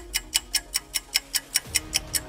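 Clock-ticking sound effect: fast, even ticks at about five a second, over low background music.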